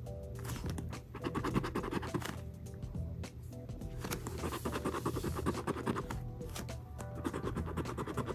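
A small round scraper rubbing the latex coating off a paper lottery scratch-off ticket in bursts of quick strokes with short pauses, over steady background music.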